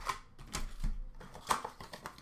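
Cardboard box of hockey card packs being handled: a few sharp taps and rustles, the loudest about one and a half seconds in.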